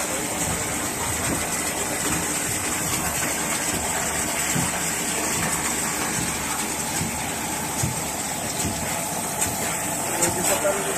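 Steady rush of water pouring into the tank of a water-ink waste water filtration machine, with the machine's small pump motor running.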